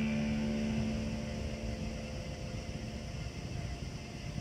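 The last chord of the song, electric bass with the band's recording, ringing out and fading away over about three seconds, leaving a low steady rumble.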